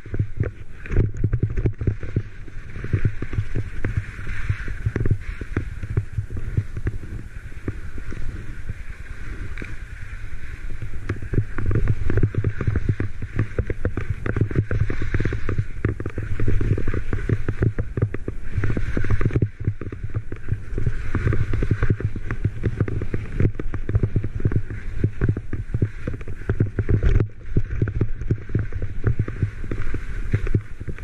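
Wind buffeting an action camera's microphone during a downhill ski run, over the steady hiss of skis sliding across snow.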